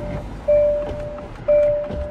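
Car interior warning chime: a single-pitched ding that starts sharply and fades, repeating about once a second, over a low rumble.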